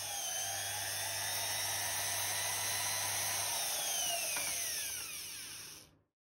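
Jeweller's flexible-shaft rotary tool running at high speed, a steady high whine. About three and a half seconds in, the pitch falls away as the motor slows, and it stops just before the end.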